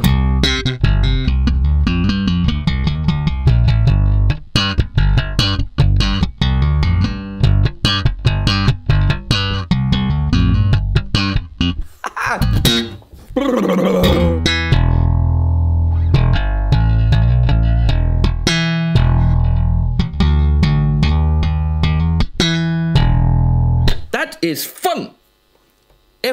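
Music Man StingRay four-string electric bass played through an amp rig in a fast, busy run of sharply attacked low notes, with a brief break about halfway through.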